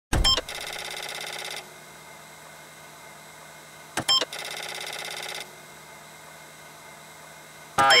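Electronic intro sound effect played twice: a sharp click, then a steady buzzing tone lasting about a second that cuts off suddenly, with faint hiss in between. A man's voice starts right at the end.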